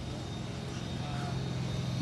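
Steady low mechanical hum from an unseen motor, with faint outdoor background noise.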